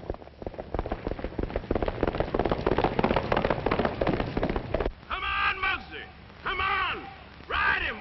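A racehorse galloping on a track, the rapid hoofbeats growing louder over the first couple of seconds as it nears and then cutting off about five seconds in. Men's voices then shout encouragement to the rider.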